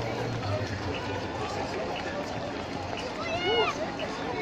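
Footsteps of many runners on a cobbled street, with spectators' chatter around them and one voice calling out briefly near the end.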